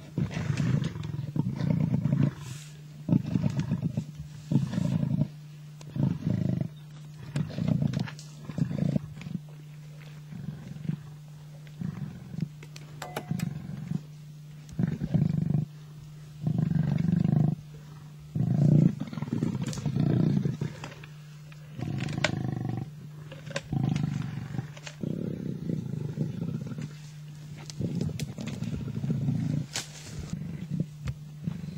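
Two male lions growling over a kill in short, loud, low bursts, about one every second or so, with a few brief lulls. A steady low hum runs underneath.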